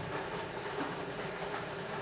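Lottery ball-drawing machine running, its numbered balls rattling steadily inside the drum.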